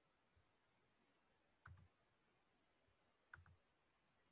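Near silence: room tone with faint computer clicks, a close pair of clicks about two seconds in and another pair near the end.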